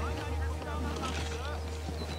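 Indistinct voices over a steady low drone and background music.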